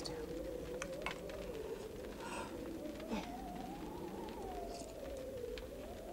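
A soft, long-held tone that slowly wavers up and down in pitch without a break, under a couple of quiet spoken words.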